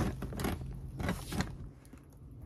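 Handling noise as the camera or phone is set in place: about four soft knocks and bumps in the first second and a half, over a faint low hum, then quieter.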